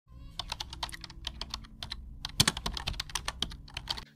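Rapid, irregular keyboard typing clicks, several a second, with one louder pair of clicks a little past the middle, over a faint low steady hum.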